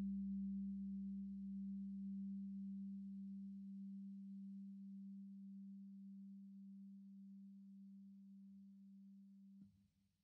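Background music: one low held tone, slowly fading, that cuts off suddenly just before the end.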